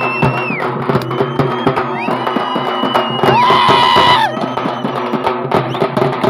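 Fast, steady rhythm of frame drums beaten with sticks, with long high-pitched tones held over it; the loudest tone comes a little past halfway and lasts about a second.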